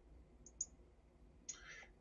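Near silence broken by one faint computer mouse click about half a second in, then a soft short hiss near the end.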